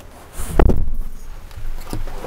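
Campervan pop-top bed platform pulled down by hand: a dull thud about half a second in, then a rustle that fades.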